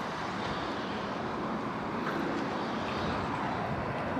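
Wind blowing across the microphone: a steady rushing noise.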